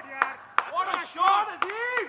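Scattered sharp hand claps from a few cricket players, irregular and several a second, with short shouted calls between them.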